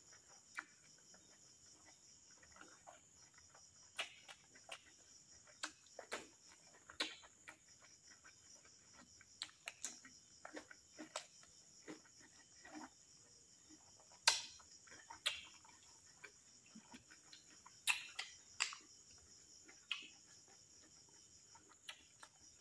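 Close-miked eating sounds from a man eating rice and meat curry by hand: irregular sharp clicks of chewing and lip smacks, a few louder ones about 14 and 18 seconds in. Under them runs a steady high chirring of crickets.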